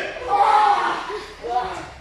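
People's voices talking in short phrases; no other clear sound stands out.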